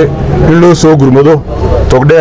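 Only speech: a man speaking Somali into a cluster of press microphones.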